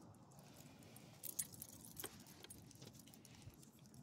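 Dog leash clips and harness tags jingling: a few light metallic clinks about a second in and again at two seconds, over otherwise near silence.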